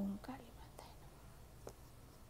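A brief low murmur from a woman's voice at the start, then soft whispering and a faint tap or two of tarot cards being handled.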